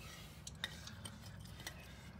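Quiet low hum with a few faint, light clicks, one about half a second in, another just after, and one more near the end.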